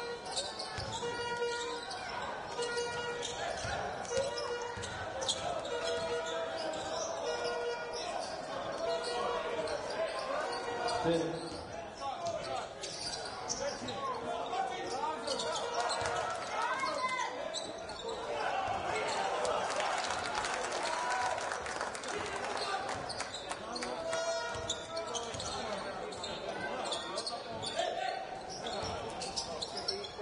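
Basketball dribbled on a hardwood court in a large hall, the bounces over shouting players and crowd noise. The crowd noise grows louder a little past halfway.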